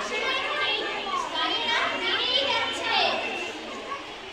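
Schoolgirls' voices, several talking and calling out at once, with no single clear speaker.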